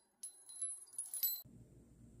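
Faint, high tinkling chime notes, a few light strikes with a thin ringing after them, stopping about one and a half seconds in; then a faint low room hum.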